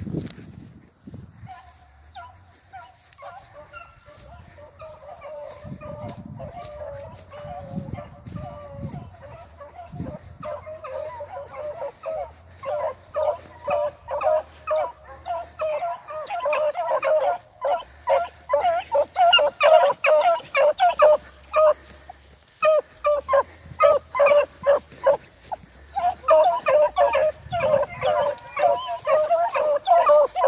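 Beagles baying as they run a rabbit: long drawn-out howls at first, then from about ten seconds in a dense run of short, loud barks from several hounds as the chase comes closer.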